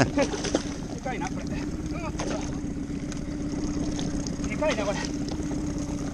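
Small boat's engine idling with a steady low hum, over a constant hiss of wind and water.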